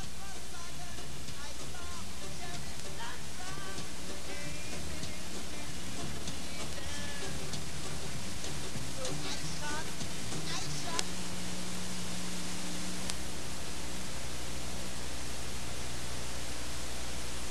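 Music at a dance party, heard through a camcorder microphone under a steady hiss-like roar of crowd noise, with a few voices calling out over it.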